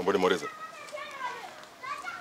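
Speech only: voices talking, children's voices among them, loudest in the first half second.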